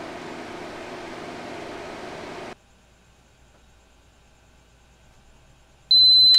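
Steady fan-like whir of an inverter setup running a load of about 20 A from a 12 V LiFePO4 battery, cutting off abruptly about two and a half seconds in. Just before the end, a loud, steady high-pitched electronic beep starts, as the battery reaches the end of its discharge.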